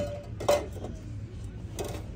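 Glassware clinking: a sharp clink with a brief ringing tone about half a second in, then a softer knock near the end, over a steady low background hum.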